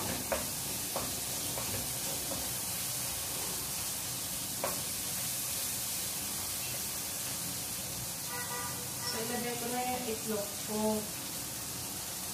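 Curry powder frying in oil in a wok on a gas stove, a steady sizzle, stirred with a wooden spatula that knocks against the pan a few times.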